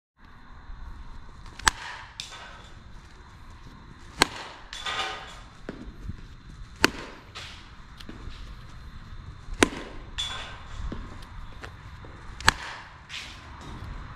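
A softball bat hitting a ball five times, every two and a half to three seconds, each a sharp crack followed about half a second later by a fainter knock.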